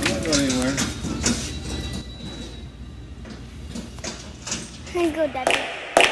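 A wire shopping cart rolling and rattling, with scattered small knocks, while a child's voice sounds briefly at the start and again near the end.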